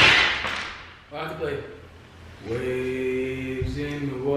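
A loud breathy rush of air at the start, then a young man's voice starts to sing, holding one steady note through the second half.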